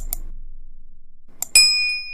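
Subscribe-button animation sound effects: a quick double mouse click at the start, then another click about a second and a half in followed by a bright bell ding, the loudest sound, that rings on and fades slowly.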